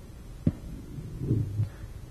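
A pause in a man's talk, picked up on a lapel microphone: a single sharp click about half a second in, then a short, quiet, low hum of his voice.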